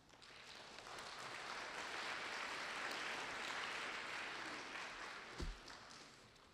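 Audience applauding, swelling over the first second and dying away near the end, with a single thump shortly before it stops.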